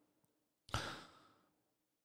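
A single short breath into a close microphone, about two-thirds of a second in and lasting about half a second; otherwise near silence.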